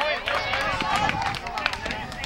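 Several voices calling out and chattering at once, overlapping, with high-pitched voices among them, as from players and spectators at a ball game.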